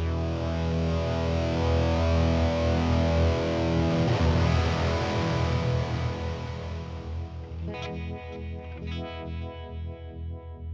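Electric guitar played through a Fractal Audio Axe-FX III amp modeller, on a patch that morphs from a clean vibe tone to a lead tone. Held chords ring out, changing about four seconds in, and from about eight seconds in separate picked notes come through more clearly.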